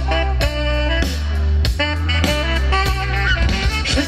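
Live band playing an instrumental passage with no singing: horns (saxophone, trombone, trumpet) and electric guitar over bass and drums keeping a steady beat.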